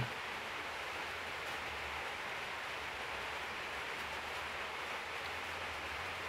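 Steady, even hiss of background noise, with no distinct sounds in it.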